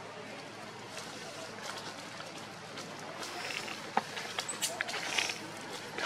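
Dry leaves crackling and rustling as macaques move over leaf litter, a run of sharp crackles in the second half, over a background of indistinct voices.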